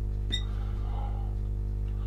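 Steady electrical hum with no speech, while a marker writes on a glass light board; the marker gives one short, high squeak about a third of a second in.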